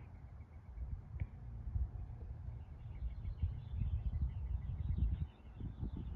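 Low, uneven rumble of wind and handling noise on a phone microphone outdoors, with faint bird chirping starting about halfway through.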